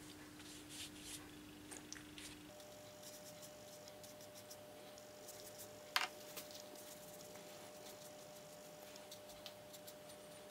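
Faint scratching of a watercolour brush across paper as a thin, watery wash is laid down, with a single sharp tap about six seconds in.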